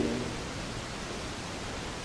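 A steady, even hiss of background noise, with no distinct event in it.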